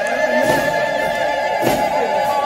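Traditional music: a reedy wind instrument holds one long, wavering note, with a couple of drum strokes.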